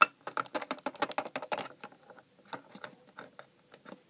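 Quick run of small plastic clicks and taps as a toy figure and a toy phone are handled on a plastic playset. A sharp click opens it; the clicks come thick for about two seconds, then thin out.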